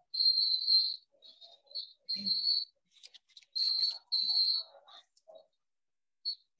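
A series of short, high-pitched whistled chirps, each held at one steady pitch, about six of them coming and going with gaps between.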